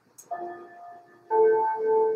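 A chiming clock playing its chime, bell-like notes ringing on, with a new note about once a second.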